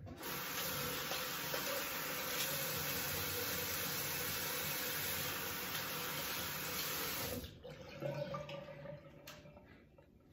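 Bathroom sink tap running steadily into the basin for about seven seconds, then shut off; faint small handling sounds follow.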